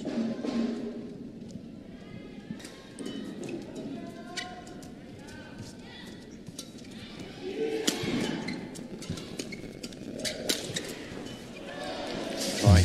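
Badminton singles rally: a string of sharp racket hits on the shuttlecock, irregular and spread over several seconds, over arena background sound.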